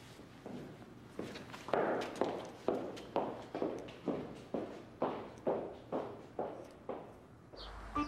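Footsteps on a hard surface at an even walking pace, about two steps a second, growing louder over the first two seconds and then holding steady.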